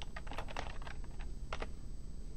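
Typing on a computer keyboard: a run of irregularly spaced key clicks.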